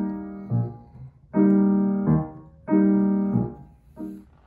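Steinway grand piano playing a waltz beat with held, longer chords rather than short staccato ones. Three sustained chords, each about two-thirds of a second, are each answered by a short low bass note.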